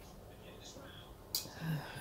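Quiet room with a woman's soft mouth sounds: a short sharp hiss-like breath about a second and a half in, then a brief low hum just before she speaks again.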